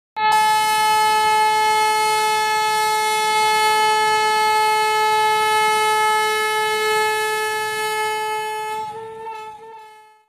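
A train horn sounding one long steady note, held for about nine seconds, then wavering slightly and fading out near the end.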